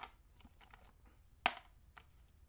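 Small gold nuggets (picker size) clicking against a plastic gold boat and pan as they are tipped and dropped: a few faint ticks, then one sharp click about one and a half seconds in.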